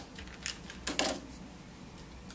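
Small plastic clicks and taps from a handheld adhesive tape runner being pressed onto a paper bow and set down on a wooden table, with two sharper taps about half a second and a second in.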